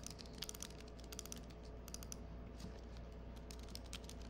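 Typing on a computer keyboard: quick, irregular keystrokes as code is entered, fairly faint, over a faint steady low hum.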